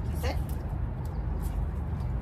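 A woman says the command "Sit" once, then a steady low rumble with a few faint clicks.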